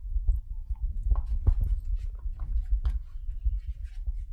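Mastiff puppy playing with a rubber ball: a low, irregular thumping rumble, with a few sharp knocks as the ball and paws hit the tile floor.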